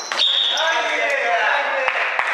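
A basketball bouncing on a wooden gym floor, with a few low thuds near the end, under players' voices calling out in a large echoing hall.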